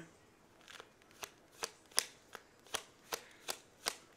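A deck of tarot cards being shuffled by hand: a run of short, sharp card snaps, about three a second, starting about a second in.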